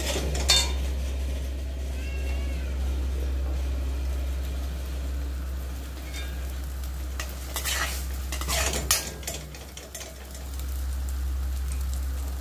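Eggs and chopped onion sizzling as they fry in a pan, with a metal spatula stirring and scraping against the pan. A few sharper scrapes come about eight to nine seconds in.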